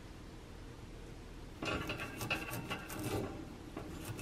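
Scouring pad scrubbing the bars of a metal wire oven rack, starting about a second and a half in: a scratchy rubbing made of many quick short strokes.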